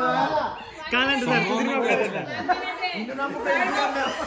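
Several people talking over one another in a room: lively overlapping chatter.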